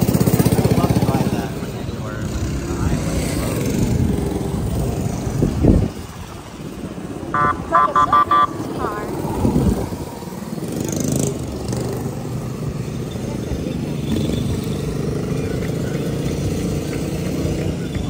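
Small gasoline engines of Shriners' miniature parade cars running as they drive past, one revving up near six seconds in. A quick run of about four short beeps comes shortly after.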